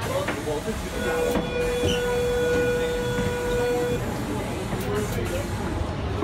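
Sydney Trains Tangara electric train at a station stop: steady rumble of the train and platform, with a steady buzzer-like electronic tone from about a second in, lasting about three seconds.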